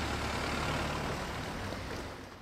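Steady seaside ambience: surf washing over the rocks together with wind, heard as an even rushing noise over a low rumble.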